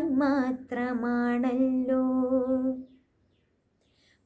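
A woman singing a line of a Malayalam poem unaccompanied, in the melodic style of Malayalam kavitha recitation. The phrase ends on a long held note and breaks off into silence about three seconds in.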